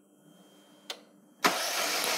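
A click from the ignition key, then about a second and a half in the starter motor starts cranking the engine with a steady, even whirr. The engine turns over without firing: the injectors are unplugged and the spark plugs are out, for a spark test of the ignition module.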